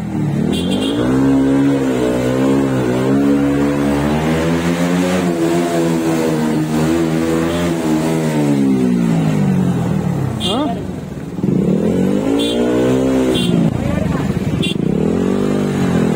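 Motorcycle engine running while riding, its pitch rising and falling in slow sweeps as the throttle opens and closes. It drops off briefly about eleven seconds in, then picks up again.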